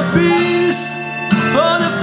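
Accordion holding chords under an acoustic guitar, with a voice singing the melody over them.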